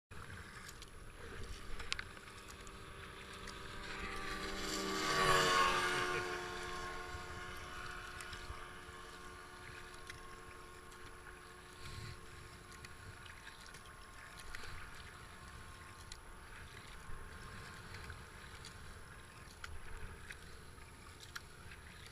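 Kayak paddling on a river: paddle strokes and water lapping at the hull. About five seconds in, a motor passes close by, getting louder, then dropping in pitch and fading as it goes away.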